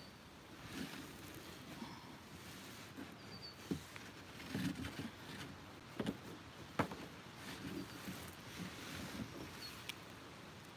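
Plastic kayak bumping and rubbing as the paddler shifts her weight in it against the shore, with sharp knocks about four, six and seven seconds in.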